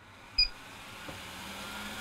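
A touch-control beep from a Berhimi under-cabinet range hood about half a second in, then its extractor fan starting up: a steady hum and rush of air that grows gradually louder as the fan spins up.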